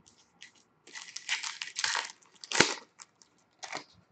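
A foil trading-card pack wrapper being torn open and crinkled, for about a second and a half, followed by two sharp taps of cards set down on a glass tabletop.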